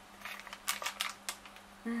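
Plastic lid and inner film of a tub of miso being pulled open, crinkling: a string of sharp clicks and crackles over the first second and a half.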